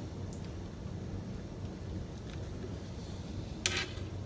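Faint chewing of a sloppy joe sandwich over a steady low background rumble. A brief sharp breathy sound comes near the end.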